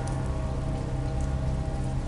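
Steady rain ambience, an even hiss of rain falling, with a faint low steady drone beneath it.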